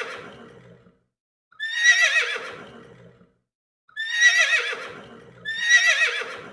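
Horse whinnying: three quavering, high-pitched neighs that each trail off lower, the first about a second and a half in and the last two close together near the end, after the fading tail of an earlier one.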